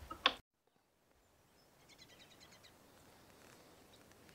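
Faint outdoor ambience, with a quick trill of about ten high bird chirps around two seconds in.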